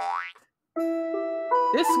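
A short cartoon 'boing' sound effect rising in pitch, then after a brief gap a music jingle of steady held notes starts, changing notes about halfway through.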